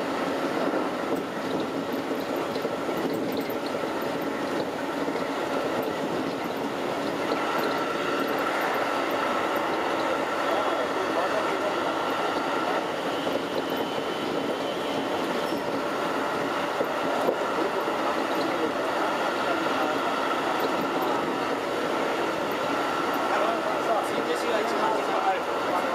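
Keikyu 2100-series electric train running at speed, heard from inside the front car: a steady rumble of wheels on rails with a steady high tone over it.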